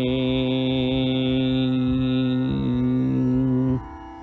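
A singer holds the long final note of a Carnatic devotional song in raga Lathangi, with a slight waver partway through, over a steady tanpura drone. The voice cuts off just before the end, leaving the drone ringing on alone, much quieter.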